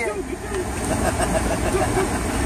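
Steady low engine and road rumble inside the cabin of a Toyota taxi moving in city traffic, with faint voices over it.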